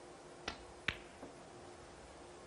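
Snooker shot: the cue tip clicks against the cue ball, and a louder click follows under half a second later as the cue ball strikes a red. A fainter knock comes about a third of a second after that.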